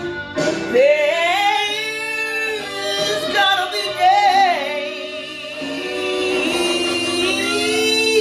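A woman singing a blues song over an instrumental backing, with long held notes that waver in vibrato, sliding between pitches.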